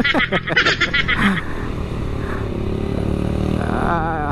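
Motorcycle engine running steadily under a light, even throttle while riding, with wind and road noise over the microphone. A voice is heard over it for about the first second and a half.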